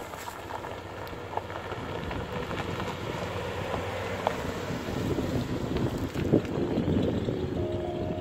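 The 1973 Cadillac Eldorado's 8.2-litre V8 running as the car pulls off and drives past and away, growing louder in the second half, with wind buffeting the microphone. Music starts near the end.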